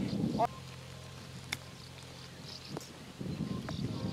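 A golf ball struck with a 60-degree wedge on a short approach shot: one sharp click a little over a second in, over light wind noise.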